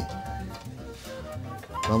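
Soft background music with held, steady tones.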